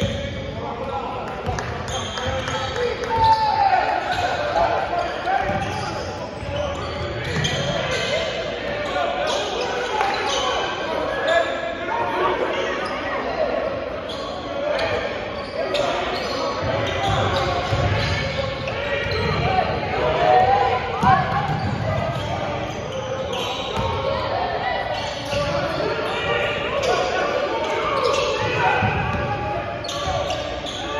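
Basketball being dribbled on a hardwood gym floor, with repeated bounces, under voices from players and spectators that echo in the large hall.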